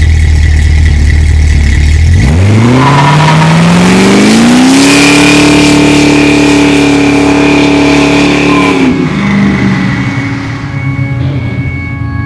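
Classic Ford Mustang engine idling, then revving up smoothly over about two seconds and held at high revs during a smoky burnout, dropping back about nine seconds in.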